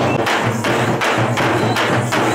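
Large double-headed procession drums beaten with sticks in a fast, steady rhythm of about three to four strokes a second.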